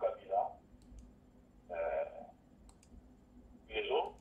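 A person speaking in short phrases separated by pauses, with a few faint clicks in between.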